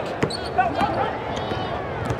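Basketball bouncing on a hardwood court as players run the ball up the floor, with a sharp bounce about a quarter-second in and short, high squeaks near the end.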